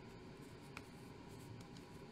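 Faint handling of a Magic: The Gathering card on a playmat: soft scratchy sliding with a light tap about three-quarters of a second in.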